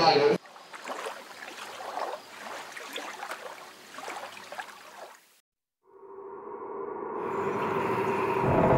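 Faint hiss with small crackles for about five seconds, then a short silence. After it, a sustained soundtrack tone fades in and swells steadily louder.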